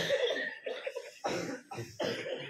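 A man's short, sharp non-speech vocal bursts over a microphone and public-address system, starting suddenly and loudly at the outset, with further bursts later on.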